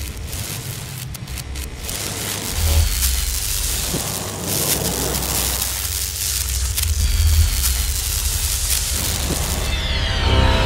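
Intro sound effects: dense electric crackling over a deep low rumble, with a few thin falling whooshes, leading into intro music.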